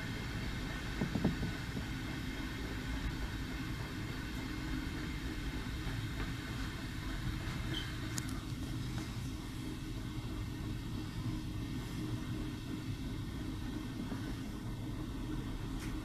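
Passenger train running slowly on rails, heard from inside the car: a steady low rumble of wheels on track. A short knock about a second in and a faint click near eight seconds.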